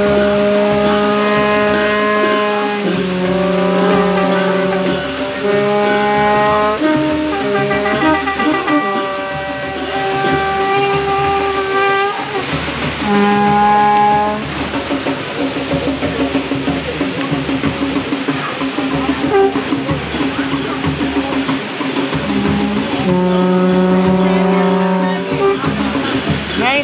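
A slow melody sung in long held notes that step up and down in pitch, with short breaks between phrases.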